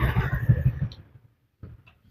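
Motor scooter passing close by, its engine sound loud at first and fading away within about a second.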